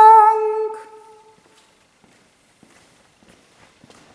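A single voice singing, holding one long note at the end of a chanted liturgical phrase, which fades out about a second in. Then near-quiet with a few faint scattered clicks.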